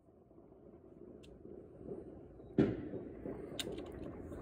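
A firework goes off with one sharp, loud bang about two and a half seconds in, over a low rumble that builds slowly. A few short crackles follow near the end.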